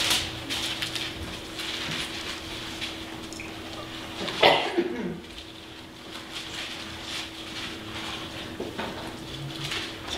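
Bible pages being turned and light paper rustling in a quiet room, over a steady electrical hum. A light knock right at the start and a brief louder noise about halfway through.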